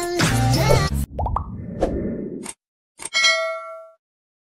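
Intro music stops about a second in, followed by a few short sound-effect pops, then a click and a single bell ding that rings out and fades near the end: the sound effect of an animated subscribe button and notification bell.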